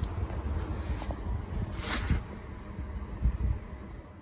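Wind rumbling on the microphone, with a brief rustle about two seconds in.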